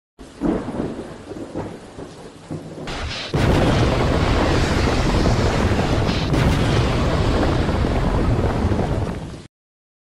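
Thunder-like rumbling with a few sharp cracks. About three seconds in, a sudden loud crash opens into a dense, steady rain-like noise with another crack partway through, and everything cuts off abruptly near the end.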